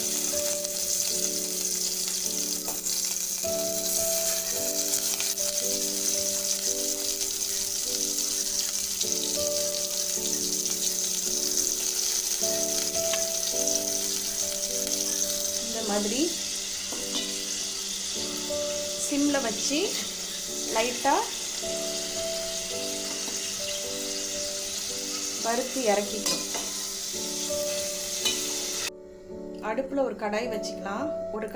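Paneer cubes sizzling as they fry in oil in a steel pan on a low flame. In the second half the sizzle eases and a slotted spoon scrapes and stirs the cubes around the pan a few times. The frying sound stops suddenly near the end.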